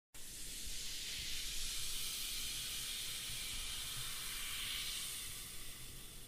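Faint steady hiss with a little low rumble, fading out near the end.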